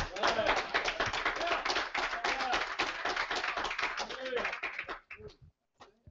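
Congregation applauding with scattered voices calling out among the claps, dying away about five seconds in.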